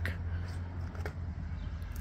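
Electric fillet knife running with a steady low buzz, with a light tap about a second in.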